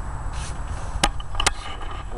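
Handling noise from a camera being moved: a low rumble with two sharp knocks, about a second in and half a second later.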